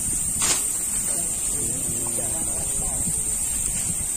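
A steady, high-pitched drone of insects in the surrounding forest, with indistinct voices talking quietly in the middle and a sharp click about half a second in.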